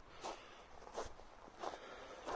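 Footsteps on a gravel path: three faint steps at an even walking pace.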